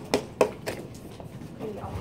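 Three sharp taps in the first second, then faint voices.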